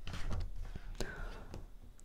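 A picture book's paper page being turned by hand: a soft, faint rustle with a light flick about a second in.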